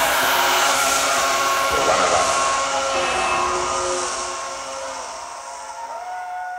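A live band's song ending on held, layered droning tones over a noisy wash, fading away over the last couple of seconds.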